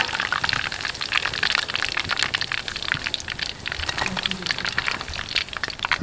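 Hot cooking oil in a karahi sizzling with a dense, steady crackle as a batch of fried chicken pieces is lifted out on a wire spider strainer.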